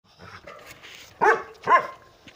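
A dog barking twice in quick succession, two short pitched barks about half a second apart, a little over a second in.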